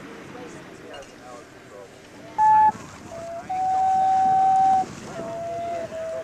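A simple wooden flute playing slow, held notes: a short high note about two and a half seconds in, then long, steady lower notes, with small breaks between them.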